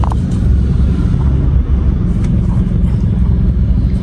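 Car engine idling, heard inside the cabin as a steady low rumble, with a few faint clicks.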